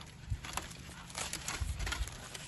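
Charred paper and aluminium foil wrapping being pulled open by hand around a baked potato: scattered crinkling and crackling, busier in the second half, with a couple of low handling thuds.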